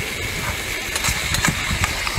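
Seafood cooking in a wok over an outdoor burner: a steady low rumble under a sizzling hiss, with a few light clicks from the spatula about a second in.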